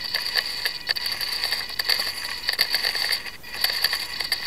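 Swashplate servos of a flybarless 450-size RC helicopter buzzing with a steady high whine and quick irregular ticks as the gyro drives corrective swash movement while the heli is tilted by hand.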